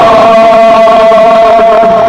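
A male noha reciter singing a Muharram lament, holding one long steady note without breaking into words.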